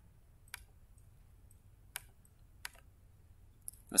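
A few faint, separate clicks of computer input, spaced roughly a second apart, as the browser page is switched to and reloaded.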